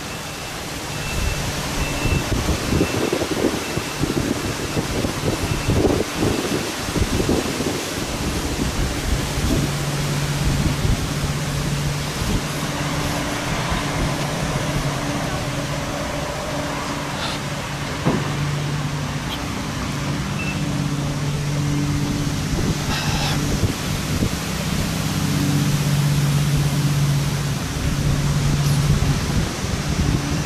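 A vehicle engine running, with road and wind noise. Irregular low rumbling buffets come in the first several seconds, then a steady low engine hum holds through the rest.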